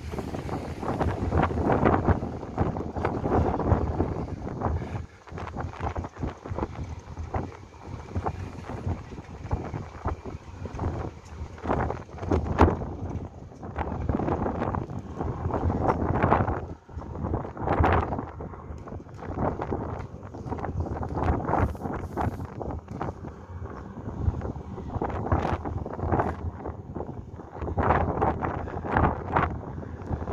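Wind buffeting the microphone on the open deck of a moving ferry, coming in uneven gusts that swell and drop every second or two.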